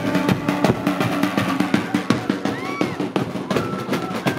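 Andean festival procession music: double-headed drums beaten with sticks in a fast, steady beat, several strokes a second. Wind instruments hold long notes over the drums for about the first second, and a short whistle-like note rises and falls later on.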